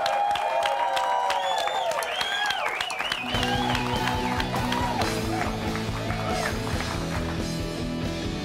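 Studio applause, with hands clapping and a wavering pitched line over it. About three seconds in, a rock band starts playing: held bass notes and chords under electric guitar.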